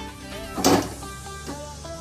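Background music playing, with one sharp clank about two-thirds of a second in as a heavy iron kadhai is set down on the metal pan support of a gas stove.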